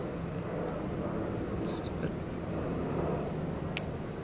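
Steady low background rumble, with a faint spoken word about two seconds in and a light click near the end.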